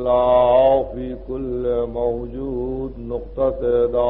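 A man's voice chanting in long held, slowly bending melodic phrases with short breaths between them, typical of religious recitation at the start of a majlis. It sounds muffled, as on an old tape recording, over a steady low hum.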